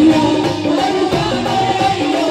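Live Indian folk Holi song over a stage sound system: hand drums (dholak and dhol) and an electric organ accompanying a singer, with held notes and a steady drum rhythm.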